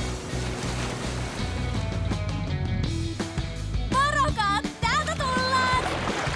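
Background music with a steady bass line over a wash of water noise. From about four seconds in come short, high-pitched vocal sounds that rise and fall.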